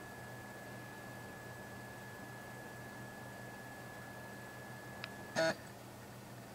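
Faint, steady, high-pitched electronic whine over a low hum, with a faint click about five seconds in and a single softly spoken word near the end.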